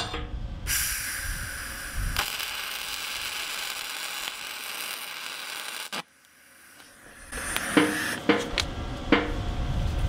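MIG welding arc laying a tack weld on a mild-steel hinge cheek: a steady crackling hiss of about five seconds that cuts off suddenly about six seconds in. A few knocks of handling follow near the end.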